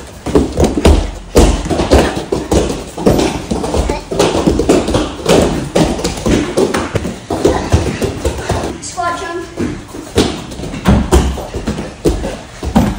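Bare feet running and landing on foam floor mats as children jump over foam obstacle pads: a quick, uneven run of thuds and slaps, with voices in the background.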